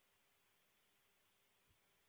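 Near silence: faint steady hiss on the feed, with one tiny click near the end.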